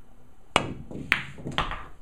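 Pool shot on a cloth-covered table. The cue tip strikes the cue ball about half a second in, and the cue ball clicks sharply into the object ball about half a second later. A third, duller knock follows as the object ball reaches the pocket.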